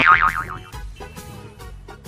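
Comic cartoon-style sound effect with a wobbling, warbling pitch that dies away within the first second, followed by quieter background music.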